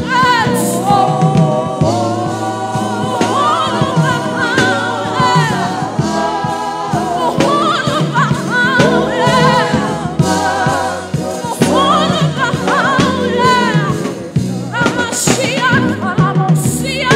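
Gospel worship singing, with a woman lead singer over a small group of backing vocalists, heard through the church's microphones.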